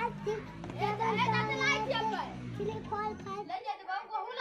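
Young children's voices: a small girl reciting in a high, sing-song voice, over a low steady hum that cuts out near the end.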